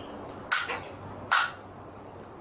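Two short, sharp handling noises, under a second apart, as a metal throttle body is turned over in the hands.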